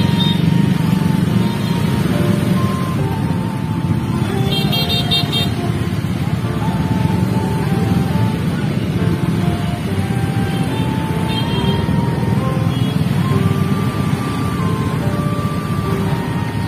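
Congested street traffic: many motorcycle and car engines running and idling close by in a steady, loud rumble. A brief high, pulsing beep, like a horn, sounds about five seconds in.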